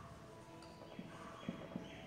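Marker pen writing on a whiteboard: faint squeaky strokes and three light taps of the tip against the board in the second half.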